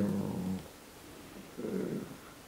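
A man's low, drawn-out hesitation 'eh' trailing off about half a second in, followed by a brief low hum or murmur near the end; between them only quiet room tone.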